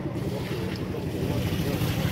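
Water poured from a plastic bucket, splashing onto loose soil around a newly planted sapling, with wind buffeting the microphone and faint voices.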